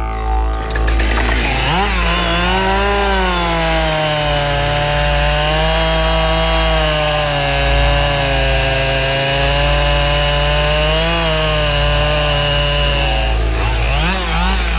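Husqvarna 572XP two-stroke chainsaw cutting through a log at high revs. The engine note rises briefly about two seconds in, then settles lower and steady under the load of the cut for about ten seconds, with a small lift near the end before it stops.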